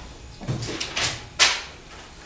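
Bible pages being leafed through and handled on a table: a soft low thump about half a second in, then a sharp, brief swish a little after the middle.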